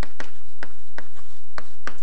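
Chalk writing on a chalkboard: a run of short, sharp taps and scrapes, about half a dozen in two seconds, irregularly spaced.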